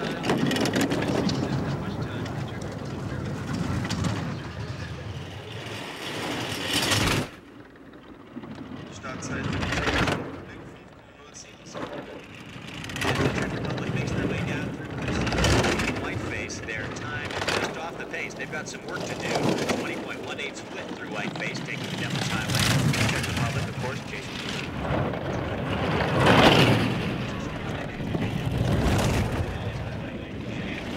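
A four-man bobsleigh running down an ice track. Its runners rumble and hiss, swelling and fading each time it passes a trackside microphone, roughly every two to four seconds.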